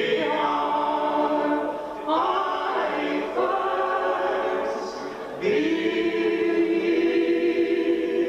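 Unaccompanied folk singing: a woman and a man sing together in harmony, holding long notes. The phrases break briefly about two seconds in and again about five and a half seconds in.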